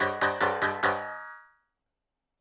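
MIDI piano playback of dense microtonal chords, in eighth-tones, generated from a cellular automaton, struck about four times a second. The last chord, a little under a second in, rings out and fades to silence.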